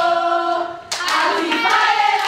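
A group of women singing a football chant together, with a held note that fades, then a sudden clap and shout about a second in as the chant starts up again with hand-clapping.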